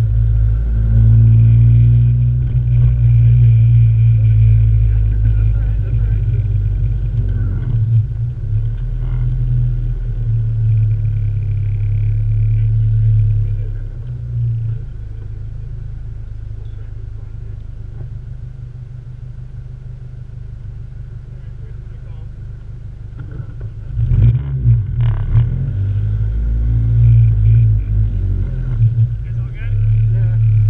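Honda CRX's inline-four engine running hard, heard from inside the car, with a steady low drone. About halfway through it eases off and runs quieter for roughly ten seconds, then comes back up to full load near the end.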